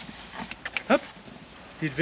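A dog gives one short cry rising in pitch about a second in, after a few soft clicks.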